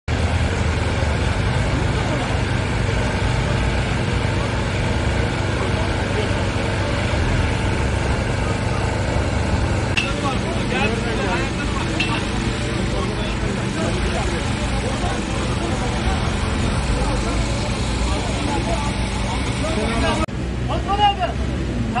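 Steady low engine drone with indistinct voices of people milling about; the drone drops away abruptly about twenty seconds in and the voices come forward.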